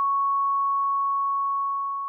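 A single steady, high-pitched electronic tone like a sustained beep, the closing sound of a dark electro track, beginning to fade near the end.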